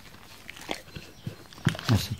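A Cane Corso dog making mouth sounds inside a wire basket muzzle: a handful of short, quiet clicks and smacks, the loudest near the end.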